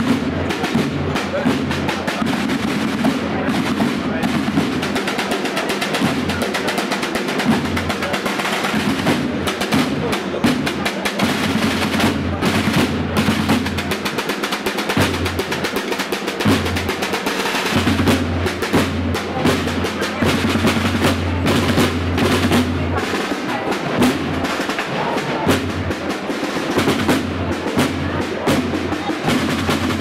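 Marching-band snare drums played with sticks, beating a continuous processional cadence of dense strokes and rolls.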